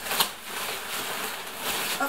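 Hands rummaging through plastic packaging and packing material in a cardboard box, making a continuous rustling with a sharp click just after the start.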